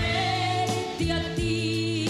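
Live pop ballad: a woman singing long held notes into a microphone over band accompaniment, the bass notes changing about once a second.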